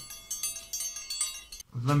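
A cluster of high chiming tones ringing together for about a second and a half, then cutting off abruptly.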